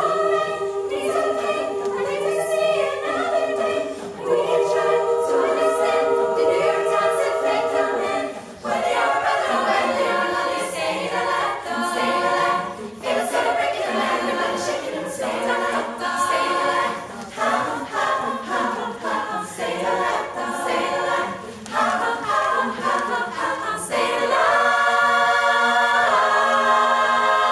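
Women's choir singing a cappella in a pop arrangement: held chords for the first several seconds, then choppy, rhythmic singing with short breaks, ending on a long held chord.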